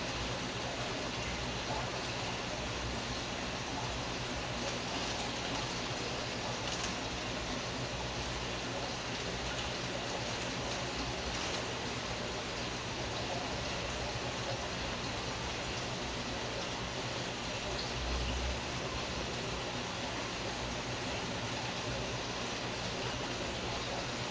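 Steady, even rush of aquarium water circulation and aeration, over a faint low hum.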